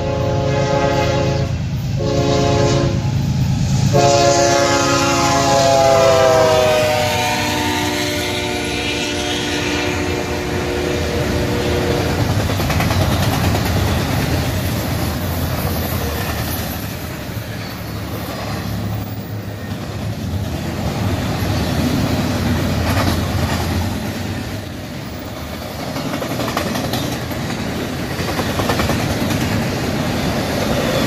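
Union Pacific GE C45ACCTE freight locomotive's air horn sounding three blasts. The last blast is long and falls in pitch as the locomotive goes by. Then comes the steady rumble and clatter of double-stack container cars rolling past.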